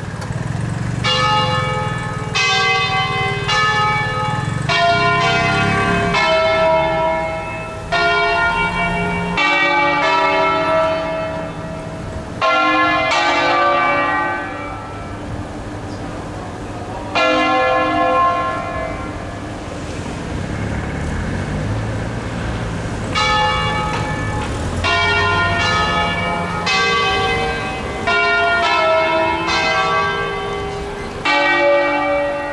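A ring of six church bells in C, swung full circle by hand in the Ambrosian manner, striking one after another in quick succession so their long ringing tones overlap. The strokes thin out about two-thirds through, then pick up again.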